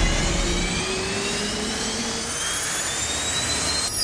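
Cartoon jet-engine sound effect of a flying craft passing overhead: a steady rushing noise with whining tones that slowly rise in pitch.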